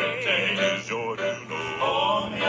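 Male gospel quartet singing together in harmony, several voices holding and bending notes at once, with a steady low hum underneath.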